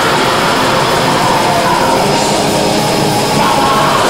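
Black metal band playing live: a dense, loud, steady wall of distorted guitars, bass and drums.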